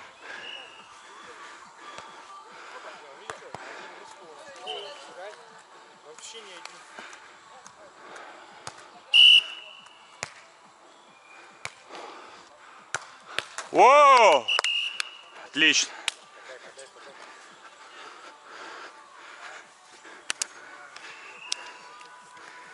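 Beach volleyball rally: several sharp slaps of hands and forearms on a volleyball. A player gives a loud shout about fourteen seconds in that rises and falls in pitch, with a shorter call just after it.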